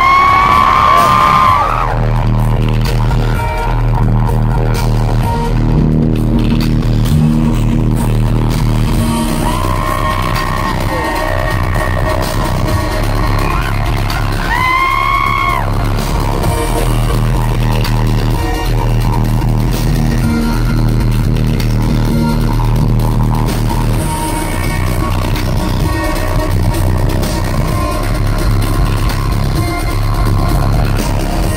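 Live rock band playing loud in an arena, picked up from the crowd by a phone microphone, over a steady repeating bass pattern. A voice holds long notes right at the start and again about halfway through.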